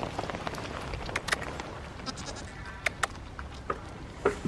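Goat chewing a piece of apple: a run of short, crisp crunches, with two sharper bursts about a second in and near the three-second mark.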